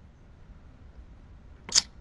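Quiet room tone with a low hum, broken about two seconds in by one short, sharp, hissy click.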